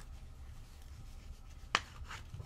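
Hands handling a small stack of baseball cards, with one sharp click of card stock near the end, over a low steady hum.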